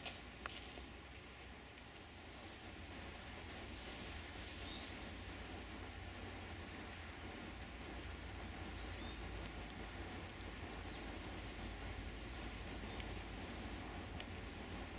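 Outdoor ambience: short, high bird chirps every second or so over a steady low rumble and hiss, with a couple of faint ticks.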